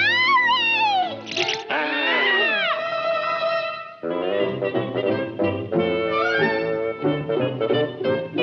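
Orchestral cartoon score. The first three seconds hold sweeping wailing slides, up then down, with a short rushing burst and falling glides. After that the orchestra plays on with held chords.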